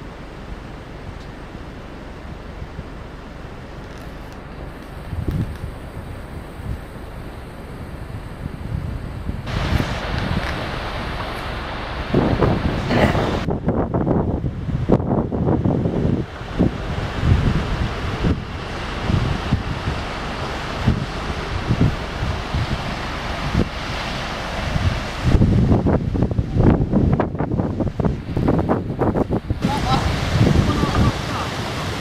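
Wind buffeting the camera microphone over the rushing of a rocky river. It is a low, steady rumble for about the first third, then turns louder and gusty.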